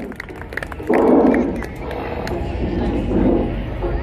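Indistinct voices over a steady low rumble, with a louder burst of voices about a second in.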